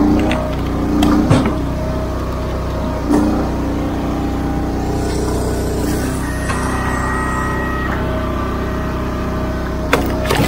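Gas engine of a Wolfe Ridge commercial log splitter running steadily as oak and cherry rounds are split, with sharp knocks of wood about a second in and again about three seconds in. A thin, higher whine is held for a second or two past the middle.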